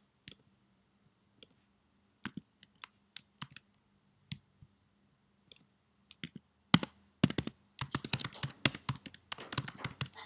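Isolated clicks every second or so for the first several seconds, then a fast run of computer keyboard typing from a little before seven seconds in.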